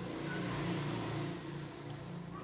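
A motor vehicle passing by, its noise swelling to a peak around the middle and fading away, over a low engine hum.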